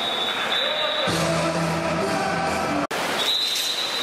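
Indoor pool arena ambience, a constant wash of water and crowd noise. Over it, arena PA music plays a few held notes for about two seconds. Just before three seconds the sound drops out for an instant at an edit, then the ambience resumes with a thin steady high tone over it.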